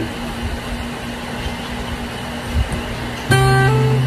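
Acoustic guitar with a capo: after about three seconds of steady background hum, a note is plucked and rings out loudly, with another note following about half a second later as the intro begins.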